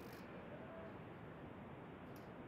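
Near silence: a faint, steady hiss with no distinct event.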